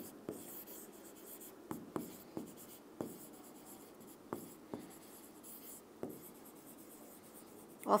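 Hand-writing on a classroom board: faint, irregular scratches and taps as letters are stroked out one after another.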